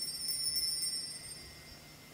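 Altar bells ringing at the elevation during the consecration at Mass, with a few shakes that ring on and fade out about halfway through.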